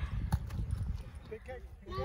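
Low rumble and irregular thumps on a phone microphone in the open, with one sharp knock about a third of a second in. A small child's voice calls briefly near the end.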